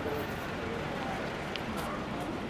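Busy city-pavement ambience: overlapping chatter of several passing pedestrians over a steady background wash of street noise.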